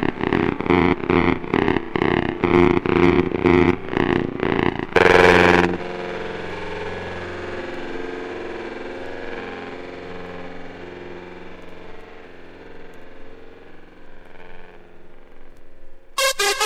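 Hard trance breakdown: a synth chord pulsing in a fast, even rhythm for about five seconds, a brief louder swell, then a held synth pad chord slowly fading.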